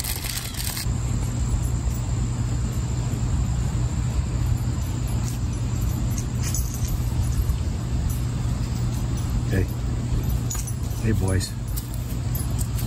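Steady low rumbling background noise. In the first second a plastic food packet crinkles as it is handled, and near the end a dog's collar tags jingle faintly as the dog comes up.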